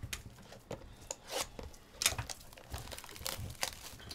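Upper Deck trading card pack wrapper being torn open and handled: crinkling rustle with several short, sharp tears.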